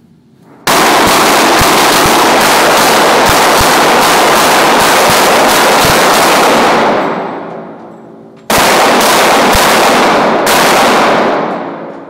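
Rapid gunfire, several shots a second, in two long strings: the first about six seconds long, the second about three seconds. It is loud enough to overload the recording.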